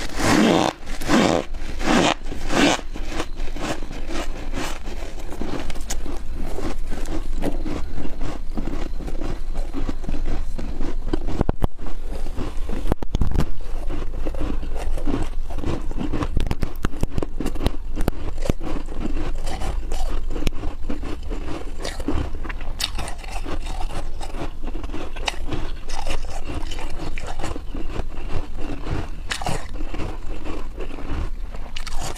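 Close-miked crunching and chewing of freezer frost, soft snowy ice eaten by the mouthful, as a dense run of small crackling crunches. A few louder bites come in the first three seconds.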